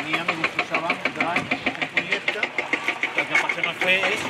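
Several people talking over a diesel engine running with a rapid, even knocking, from construction machinery at the works.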